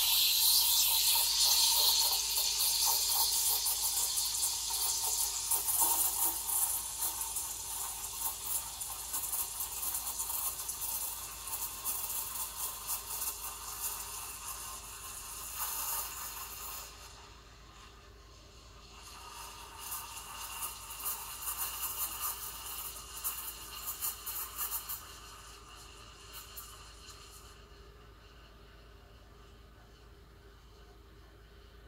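Breville Oracle BES980 steam wand steaming and frothing milk in a stainless jug: loud hissing with fine crackling as air is drawn into the milk near the surface to make foam. About seventeen seconds in it drops to a quieter hiss, swells again for a few seconds, then settles lower.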